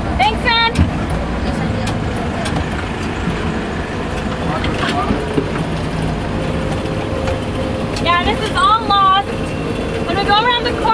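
Open-sided tour vehicle driving along a dirt track, its engine and ride noise a steady rumble heard from on board. A high voice calls out briefly near the start and again about eight seconds in.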